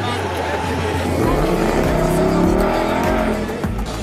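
A car engine revving up, its pitch rising for about a second and a half, then easing off, as the car drives past, heard over a background song.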